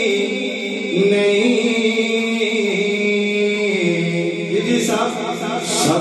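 A man singing a Punjabi naat into a microphone, holding long, drawn-out notes that step up in pitch about a second in and back down later, with a more ornamented passage near the end.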